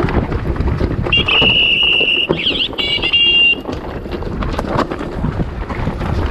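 Mountain bike rattling and clattering over a rocky trail, with wind on the microphone. About a second in, a loud, high, steady disc-brake squeal starts and lasts about two and a half seconds, wavering briefly in pitch midway before cutting off.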